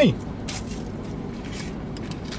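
Steady low hum inside a vehicle cabin, with faint small ticks and rustles as a plastic spoon is unwrapped from its wrapper.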